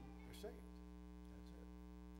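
Near silence with a steady, faint electrical mains hum, a stack of unchanging tones, and a brief faint vocal sound about half a second in.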